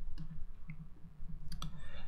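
A few faint computer mouse clicks, two of them close together near the end, over a low steady electrical hum.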